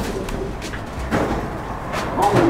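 A bird calling, with a few soft clicks.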